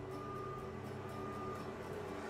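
BodyTom CT scanner's gantry drive running at slow speed as the scanner creeps along its floor track into the lock position. There is a faint steady whine over a low hum, and the whine stops a little before the end.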